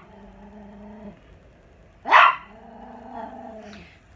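An agitated dog growling steadily, with one sharp bark about two seconds in, followed by more growling.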